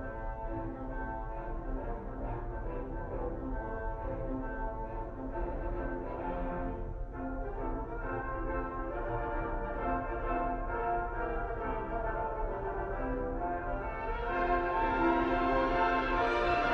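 Recorded wind band music: French horns and brass holding sustained chords, swelling louder about two seconds before the end.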